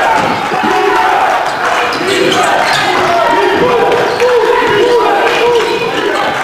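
Basketball being dribbled on a hardwood court during live play, repeated bounces under the voices of players and spectators in the gym.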